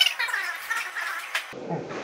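Thin, garbled, high-pitched warbling with sharp clicks and no low end, like audio put through an effect. It cuts off abruptly about three-quarters of the way in, giving way to plain room sound as a man starts to speak.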